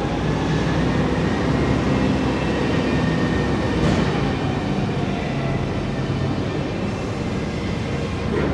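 Komatsu FG50ATU-10 LPG forklift's engine running steadily while the mast hydraulics raise the forks. There is a faint high whine and a short knock about four seconds in.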